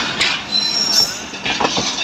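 Passenger train coaches rolling past close by as the train pulls out of the station, a steady rumble of wheels on rails with a brief high wheel squeal about half a second in and a few knocks over rail joints in the second half.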